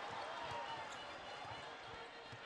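Basketball being dribbled on a hardwood court, a few bounces about half a second apart, over a low steady background of arena noise.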